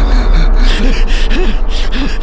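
A man panting hard while running, short voiced gasps about every half second, over background music.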